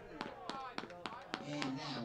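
Scattered sharp claps, about eight over the first second and a half, then a man's low voice near the end.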